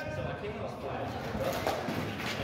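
Fencers' footsteps shuffling on concrete during a sparring exchange, with a couple of faint knocks near the end, over a low background hum.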